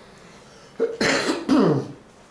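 A person clearing their throat: two harsh bursts about a second in.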